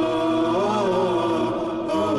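Title theme of chanted vocals carrying a slow, bending melody, with a brief pause just before the end.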